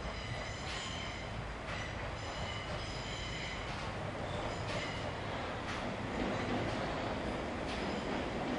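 Electric train approaching along a curved track, its rumble slowly growing louder, with repeated short high-pitched metallic squeals from its wheels.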